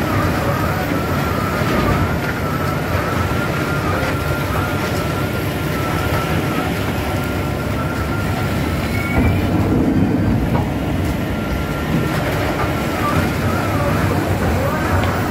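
Komptech Terminator Xtron waste-wood shredder running under load, its CAT C13 diesel engine droning steadily beneath the crunch of wood being shredded. A thin, wavering high whine runs throughout, with a few brief knocks.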